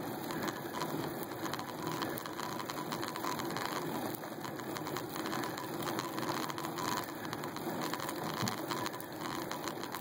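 Riding noise from a bicycle as heard through a phone clamped to its handlebars: a steady rush of tyre and road noise with a dense, fine rattling from the handlebar mount.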